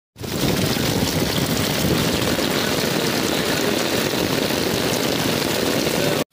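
Heavy rain pouring onto flooded pavement and puddles: a loud, steady rushing hiss with a deep low rumble under it.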